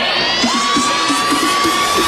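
Electronic dance-music transition: upward-sliding sweeps over a dense wash of noise, with a held high synth tone coming in about half a second in.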